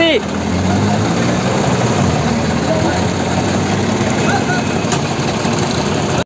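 Diesel engine of a Mahindra 275 DI tractor running steadily at low speed, close by, as it tows a tanker trailer.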